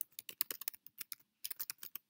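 Typing on a computer keyboard: a quick run of keystrokes, a short pause a little past a second in, then a second run that stops near the end.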